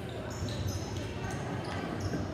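Volleyball players' sneakers squeaking and thudding on a hardwood gym floor as they run, with several short, high squeaks, over voices chattering in the hall.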